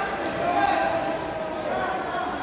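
Indistinct overlapping shouting and chatter from coaches and spectators in a gym.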